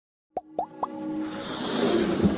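Animated-intro sound effects: three quick plops, each rising in pitch and about a quarter second apart, then a swelling musical whoosh that builds steadily.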